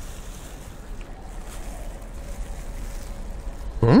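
Steady outdoor background noise with a low rumble and no distinct events, then near the end a short rising hummed "mm" from a woman.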